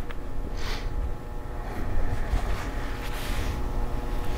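Steady low background rumble, with a few short soft hisses.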